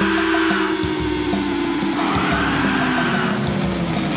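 Heavy metal song: sustained electric guitar chords over a drum kit with bass drum and snare.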